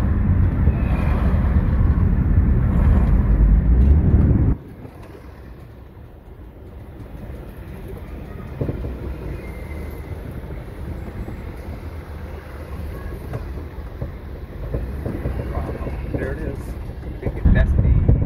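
Car driving on an unpaved dirt detour road, heard from inside the cabin: a loud low rumble of road and wind noise that drops suddenly about four and a half seconds in to a much quieter steady rumble.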